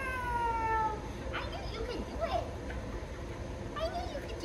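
Young dog whining: one long high whine falling in pitch through the first second, followed by a few short squeaky whimpers.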